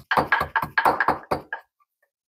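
Wooden pestle pounding in a wooden mortar, crushing garlic cloves: a rapid series of knocks, about six a second, stopping about one and a half seconds in.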